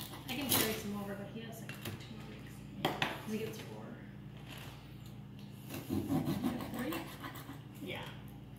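Serrated bread knife sawing across a block of clear ice, a rasping scrape in a few strokes, loudest about half a second in and again about three seconds in, scoring the ice so it can be split.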